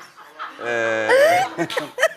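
A man's voice holding a long, drawn-out "eee" hesitation on one steady pitch for about a second, sliding up in pitch near its end.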